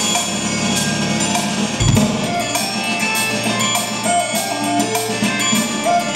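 Roland electronic drum kit played along to a recorded backing track. Steady drum strokes run over sustained pitched parts, and a deep bass comes in about two seconds in.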